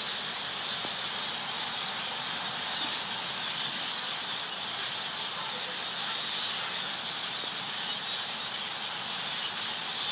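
A large flock of birds perched in bare trees, all chirping at once in a dense, steady chorus with no single call standing out.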